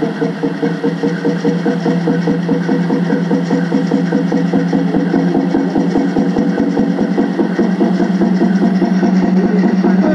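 Peyote song: a fast, even water-drum beat at about five strokes a second under a steady sung tone.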